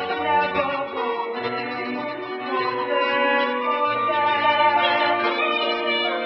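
Orchestral music from a stage musical, strings to the fore, playing sustained, slow-moving chords.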